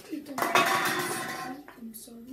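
Hard items clinking and clattering together inside a paper bag as it is snatched up off a table, with the paper rustling. The burst starts about half a second in and lasts about a second.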